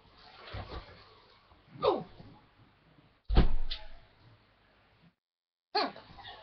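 A short, loud thump about three seconds in, after a brief spoken word. Less than a second before the end the audio cuts out to dead silence.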